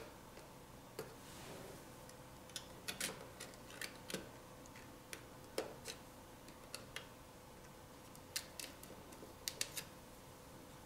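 Plastic pry tool clicking and tapping against a smartphone's metal shields and frame while working a flex-cable connector loose from the mainboard: a scatter of small, sharp, faint clicks at an irregular pace, over a faint steady hum.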